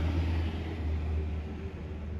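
A low, steady rumble with a fainter hiss above it.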